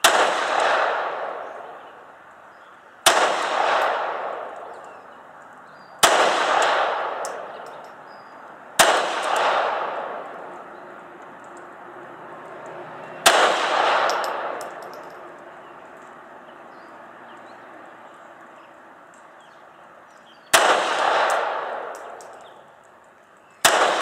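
Seven pistol shots fired one at a time at an uneven pace, a few seconds apart, with a longer pause before the last two. Each crack is followed by an echo that dies away over a second or two.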